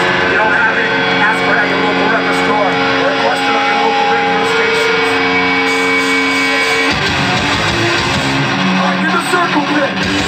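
Live hardcore band between songs: an electric guitar rings on in long steady tones under shouted voices. About seven seconds in, the full band kicks into the next song with drums and distorted guitars.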